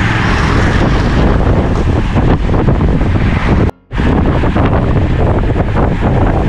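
Wind rushing and buffeting over the microphone of a camera carried on a moving road bike, loud and steady. It cuts out abruptly for a fraction of a second about two-thirds of the way through, then resumes.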